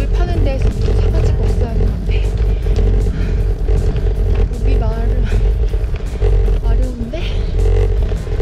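Background music playing over a steady low rumble of wind on the camera microphone from riding a bicycle, with a woman talking briefly.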